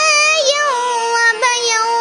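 A boy singing a Tamil devotional song, holding long notes that waver and slide in pitch over a steady drone.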